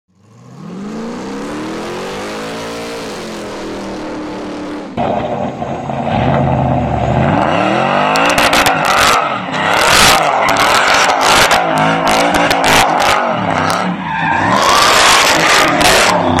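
A tone that rises and falls over a steady hiss for about the first four seconds. Then, about five seconds in, the supercharged 6.0 LS V8 of a 1960 Chevrolet C10 pickup revs up, and it spins its rear tyres in a burnout: tyre squeal and repeated loud bursts of noise from about eight seconds in.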